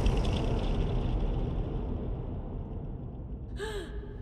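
A low rumble slowly dying away, the tail of a loud gunshot boom. Near the end comes a short, sharp gasp.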